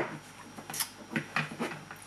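Handling of the Google Home's white plastic power adapter and its lead: a sharp click right at the start, then a run of light ticks and rustles as it is taken out and unwound.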